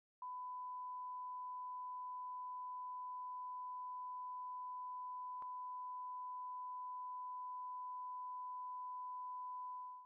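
A steady, unwavering electronic sine tone at about 1 kHz, with one sharp click about halfway through.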